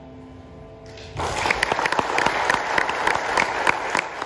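A grand piano's final chord dying away, then audience applause breaks out about a second in and carries on with many claps.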